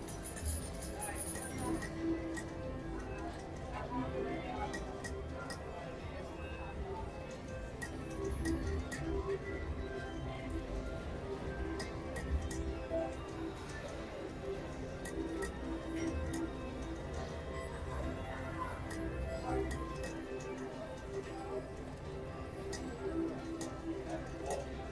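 Casino floor din of machine music and distant chatter, with the ticks and clunks of a mechanical three-reel slot machine spinning and its reels stopping, over and over.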